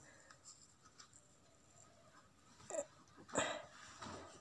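Near silence for most of it, then, near the end, two short breathy sounds from a woman, the first with a small rise and fall in pitch.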